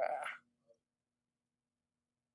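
A short vocal sound lasting about half a second at the start, like a brief murmur or word fragment, followed by a faint click. A faint steady low hum runs underneath.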